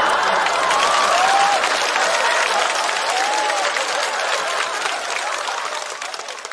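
Studio audience applauding after a stand-up punchline, a dense patter of many hands with a few voices mixed in, strongest at first and dying down near the end.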